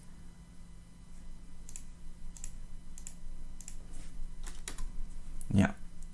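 Computer keyboard being typed on: a handful of separate, irregularly spaced key clicks over a faint steady low hum.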